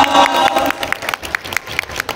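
Audience applauding, the separate claps loud at first and thinning out after about a second.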